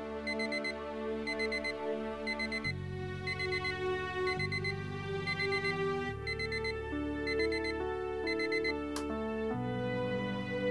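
Electronic alarm clock beeping in quick groups of four, a group about every three-quarters of a second, over soft, slow music chords. The beeping cuts off with a click about nine seconds in as the alarm is switched off.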